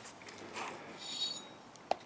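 Faint metallic clinks and a short high rattle from a chainsaw being handled with its clutch cover off, with a sharp click near the end.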